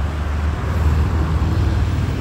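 Steady low rumble of a motor vehicle engine running, with no change in pitch or level.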